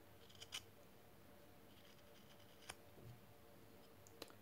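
Faint, scattered scrapes and small clicks of a sharp knife shaving the rim of a small disc cut from a fresh willow branch, rounding off its edge.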